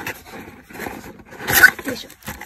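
Cardboard box flaps being pulled open by hand, the cardboard rubbing and scraping, with a louder scrape about one and a half seconds in.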